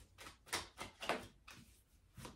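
A deck of tarot cards being shuffled by hand: a few soft, separate sliding rustles of cards against cards.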